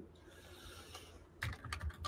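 Computer keyboard keystrokes: a quick run of a few clicks about a second and a half in, after faint room hiss.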